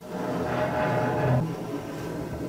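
Sliding transition sound effect: a steady rushing rumble that starts abruptly and runs for about three seconds.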